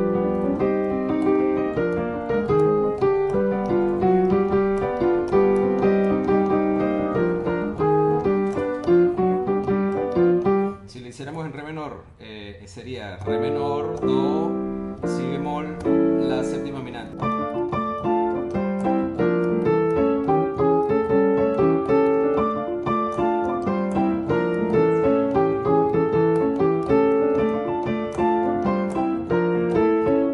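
Piano keyboard playing a syncopated salsa montuno with both hands, cycling through the Andalusian cadence in C minor that comes to rest on a G7 chord. About eleven seconds in, the playing drops in level for a couple of seconds of quick sweeping runs, then the rhythmic chord pattern resumes.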